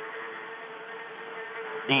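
A steady buzzing drone: one held low tone with a stack of overtones above it, unchanging in pitch and level.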